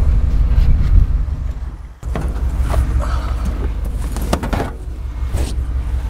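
Old pickup truck's engine running with a steady low rumble, which cuts out sharply about two seconds in and comes straight back, with scattered knocks and clicks over it.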